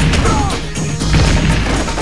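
Crashing impact sound effects over an action music score, with a hit right at the start and another about a second in.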